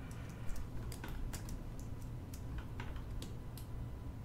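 Irregular light clicks of a computer mouse and keyboard, about a dozen spread unevenly, over a low steady hum.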